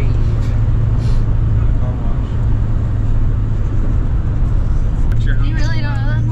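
Road and engine noise inside a moving vehicle's cab: a steady low drone. Voices come in near the end.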